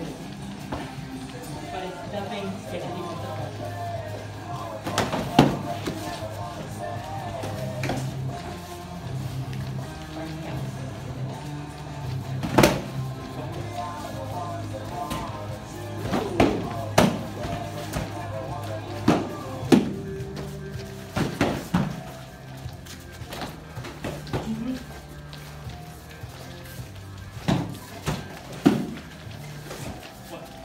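Background music with a steady low beat, cut through by about ten sharp knocks of padded practice swords striking shields, scattered through the clip and bunched in the middle.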